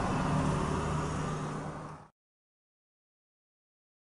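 Car driving on a road, steady engine and tyre noise with a low hum, fading out about two seconds in and then silence.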